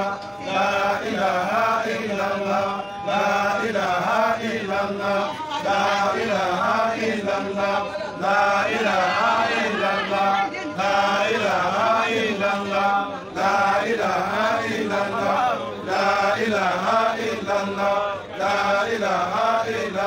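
A group of men chanting an Arabic Islamic litany (dhikr) together, one phrase repeated over and over with a short breath break about every two and a half seconds.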